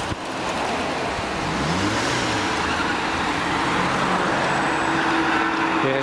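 City road traffic: cars driving past with steady engine and tyre noise, one engine's pitch rising and falling about two seconds in.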